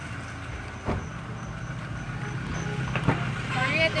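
Street noise with a low, steady rumble of road traffic and two light knocks, about a second in and about three seconds in. A voice starts near the end.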